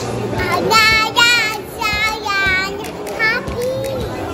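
A toddler girl's high voice singing in wavering, sing-song phrases: a short one about a second in, a longer one around the middle, and a brief one near the end.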